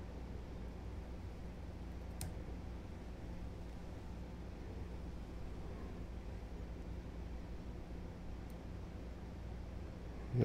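Quiet room tone with a steady low electrical hum, and one faint sharp click about two seconds in.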